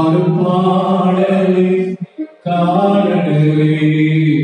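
A man singing or chanting a slow devotional song into a handheld microphone, in long held notes, with a short break about two seconds in.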